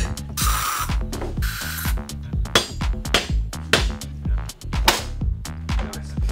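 Two short hisses from an aerosol spray can, each about half a second long, in the first two seconds. Underneath runs an electronic drum-machine beat with a steady pulse.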